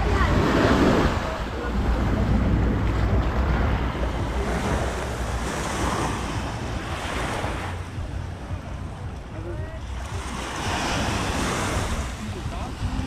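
Small sea waves breaking and washing up a sandy shore, swelling and fading every few seconds. Wind buffets the microphone throughout as a low rumble.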